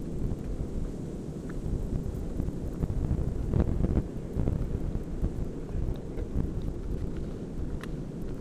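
Wind buffeting the microphone, a low rumbling gust that swells about three and a half seconds in, with a few faint clicks.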